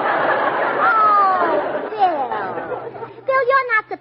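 Studio audience laughing in an old 1940s radio broadcast recording, a long swell of crowd laughter that dies away about three seconds in. A voice then resumes speaking near the end.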